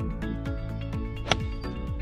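Background music with a steady beat; about a second and a quarter in, one sharp click as a gap wedge strikes a golf ball.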